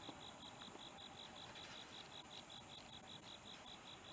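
Faint chorus of chirping insects in the pasture grass, a fast, even pulse of high chirps repeating several times a second.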